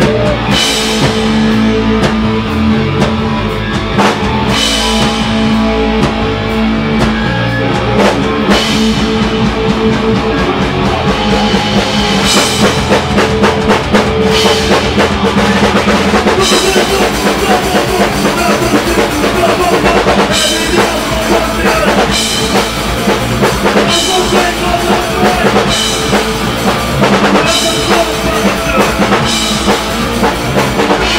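Live hardcore punk band playing: distorted electric guitars, bass and a drum kit. A heavy half-time section with a cymbal crash about every four seconds picks up into a fast beat about halfway through.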